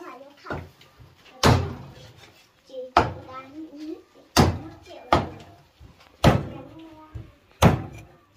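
Large kitchen knife chopping meat on a thick round wooden chopping block: six heavy chops, irregularly spaced about a second apart.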